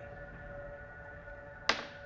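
Soft ambient background music with steady held tones. Near the end a single sharp knock sounds: a die landing on the table for the requested insight check.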